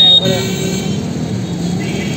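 Town street traffic with indistinct voices. A short, loud, high beep sounds right at the start.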